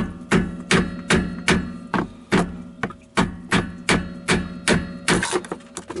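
Hammer blows on a long screwdriver driven against the lip of a stuck spin-on oil filter, a steady run of metal strikes about two and a half a second, each ringing briefly. The filter is stuck fast and is not turning.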